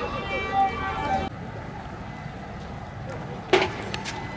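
Voices calling out in the first second or so over steady background noise, then a single sharp bang with a brief echo about three and a half seconds in.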